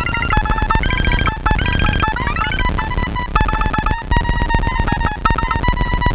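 Erica Synths Pico System III modular synthesizer played through a Charlie Foxtrot pedal: a sequenced pattern of fast noise clicks for rhythm under pulsing electronic beeps. Twice the pitch glides upward and levels off, near the start and about two seconds in.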